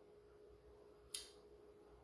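Near silence: room tone with a faint steady hum, broken once just after a second in by a single short, sharp click.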